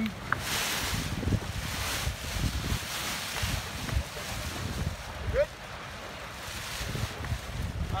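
Wind buffeting the microphone in uneven gusts on the bow of a sailboat under way, with water washing along the hull.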